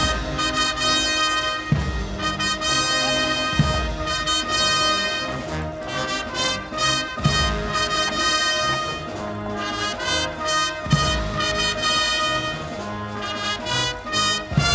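Brass band playing a slow, stately march, with deep drum strokes every two seconds or so.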